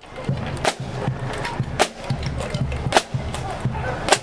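A marching band's snare drums and bass drum playing a marching beat, with a sharp, loud accented strike about every second.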